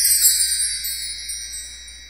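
Sparkle-transition sound effect: high, shimmering chimes that glide down in pitch and fade out over about two seconds.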